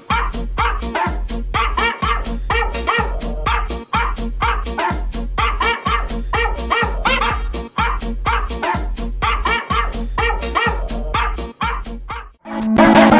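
A music remix built from a small American Eskimo dog's sampled bark, pitched up and down to play a melody. It is a rapid, even string of barks, about three to four a second, over a pulsing bass line.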